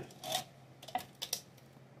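A few short, light clicks and taps from handling a mango on its wooden stick.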